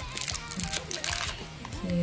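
Soft background music with faint crinkling of small plastic candy-kit packets as hands handle the dough.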